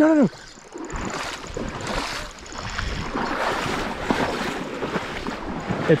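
Irregular splashing and sloshing of shallow river water, with wind rumbling on the microphone.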